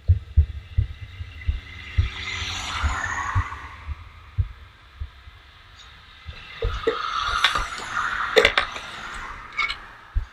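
Longboard rolling along a concrete sidewalk: low, uneven thumps two or three times a second under a rushing rolling noise. A few sharp clacks come near the end as the board is handled.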